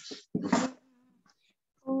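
A person's voice over a video call: one short drawn-out syllable about half a second in, falling in pitch, then silence.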